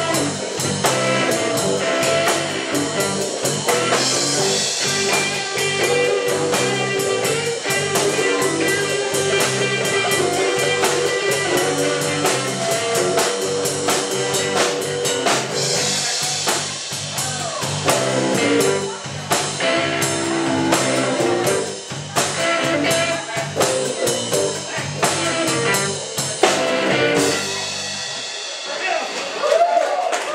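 Live blues band playing: electric guitar over bass and drum kit with a steady beat. About two seconds before the end the bass and drums stop, leaving the guitar ringing out as the song finishes.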